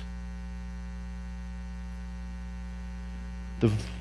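Steady electrical mains hum, a low buzz with many even overtones, running unchanged through a pause in speech; a man's voice starts again near the end.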